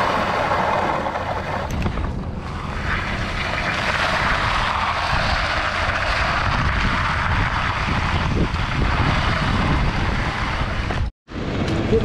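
Bull float being worked over wet concrete, a continuous scraping hiss with a low rumble underneath, which stops abruptly about eleven seconds in.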